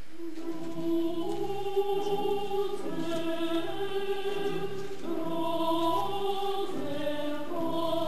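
A choir sings slow, held chords, entering about half a second in and moving together from note to note.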